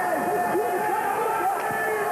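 Arena crowd of many overlapping voices shouting and calling out, steady throughout.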